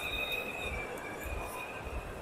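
A children's battery-powered ride-on toy buggy gives a steady high-pitched whine from its electric drive motors, which fades out as it moves away.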